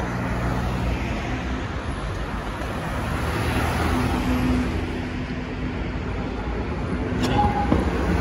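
Road traffic at a busy city intersection: cars passing close by, their tyre and engine noise swelling and easing. Near the end there is a short click and a brief tone.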